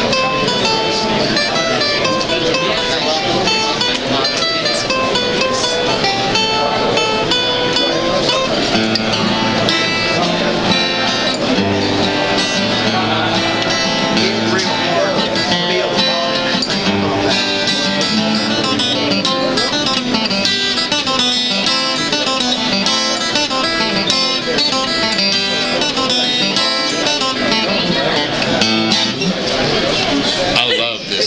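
A Hodges guitar played live: a run of quick picked notes and chords.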